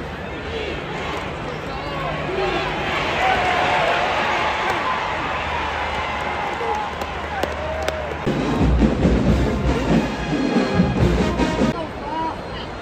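Football stadium crowd noise, many voices shouting and talking at once, with music playing underneath. From about eight seconds in, heavy, irregular low thumping joins in.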